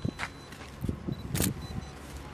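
A few short, sharp clicks and knocks, the loudest about one and a half seconds in, over a low steady outdoor background.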